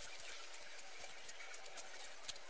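Faint rustling of a satin ribbon bow being handled, with a few light ticks as a thread is drawn through its middle.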